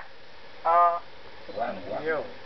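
A person's voice: one short held vocal sound about two-thirds of a second in, then softer broken voice sounds near the end.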